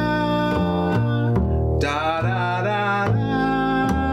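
A man sings a tune's melody on scat syllables while plucking a walking bass line underneath on an upright double bass. The low bass notes change two or three times a second below longer held sung notes.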